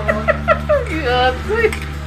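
People talking over a low, steady hum of background music; any scraping of the ladle in the wok is not distinct.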